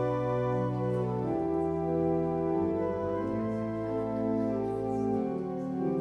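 Instrumental worship prelude played on a keyboard: slow chords held steadily over sustained bass notes, changing about once a second.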